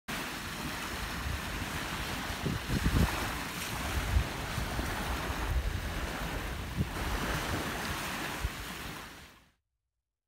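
Small sea waves washing onto the beach, with gusts of wind buffeting the microphone. The sound fades out near the end.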